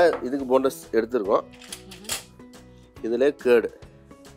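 Talking over steady background music.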